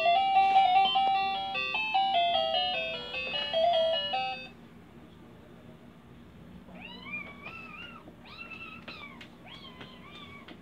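Baby walker's electronic toy tray playing a plinky beeping tune that stops about four seconds in. A few seconds later comes a fainter string of short high calls, each rising and falling, about one and a half a second.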